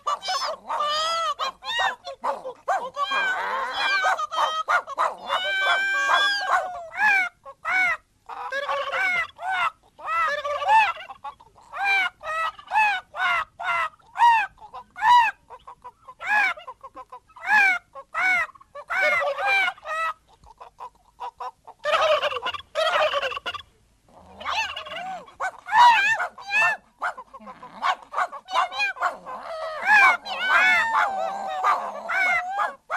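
Poultry calls, turkey-like gobbling and chicken-like clucking, on a cartoon soundtrack: many short calls in quick runs, broken by a few brief pauses. The sound is thin, with little below the mid range.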